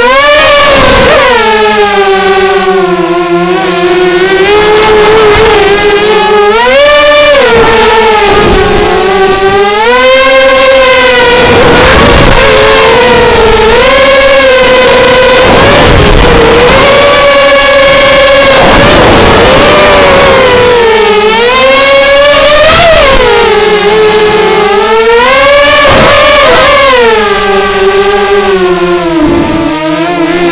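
A 210-size racing quadcopter's brushless motors and propellers whining loudly, heard from the onboard camera, the pitch swooping up and down again and again with the throttle as it flips and rolls.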